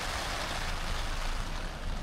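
Steady rain falling on tent fabric, heard from inside the tent as an even hiss, with a faint low rumble underneath.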